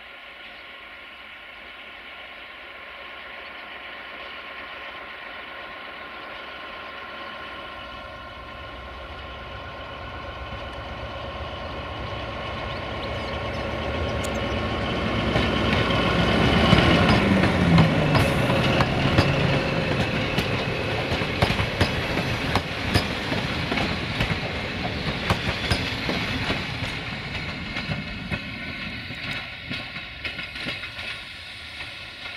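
LDH1360 diesel-hydraulic locomotive hauling a passenger train, approaching and passing close by. Its engine grows steadily louder to a peak about halfway and drops in pitch as it goes past. The coaches' wheels then click over the rail joints.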